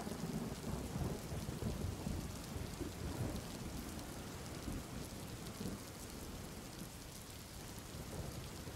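Recorded rain falling steadily, with a low rumble of thunder that slowly dies away.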